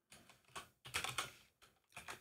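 Faint computer keyboard typing: a handful of separate key taps.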